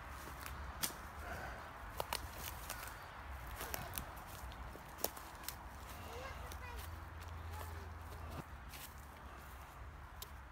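Footsteps on a leaf-littered woodland floor, with scattered sharp crackles of twigs and dry leaves underfoot, faint over a low steady rumble.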